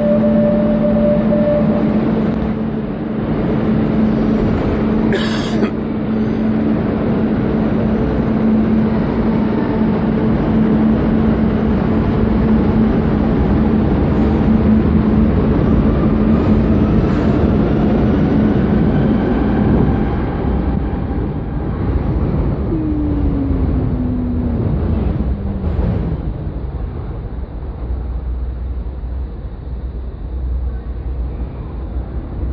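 Metro train pulling out of an underground station platform: a loud steady rumble with a low hum, a whine rising in pitch as it gathers speed, then a falling tone as it leaves and the rumble eases near the end. A sharp click comes about five seconds in.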